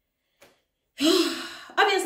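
A woman's loud, breathy sigh about a second in, after a short pause broken only by a faint click.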